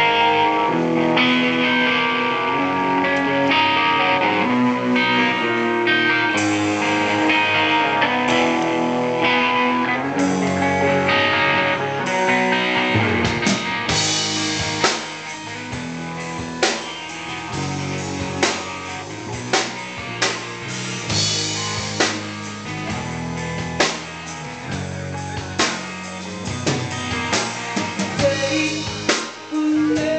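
Live rock band playing: amplified guitar chords held steadily for about the first thirteen seconds, then the drum kit comes forward with sharp hits and the music turns choppy, with short gaps between accents.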